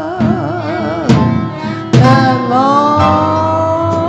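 Live band music: a woman singing into a microphone with held, wavering notes, alongside an alto saxophone over a steady low accompaniment. Two sharp hits cut through, about one and two seconds in.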